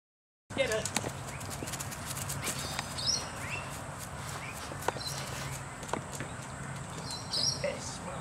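A moment of silence at a cut, then outdoor ambience: birds chirping now and then over a low steady hum, with scattered sharp clicks.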